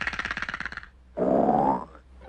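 Donald Duck's cartoon voice: two short raspy vocal sounds, the first about a second long, the second shorter and rising in pitch.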